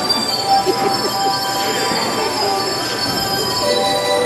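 Many small hand-held bells ringing together, a sustained shimmer of overlapping steady tones.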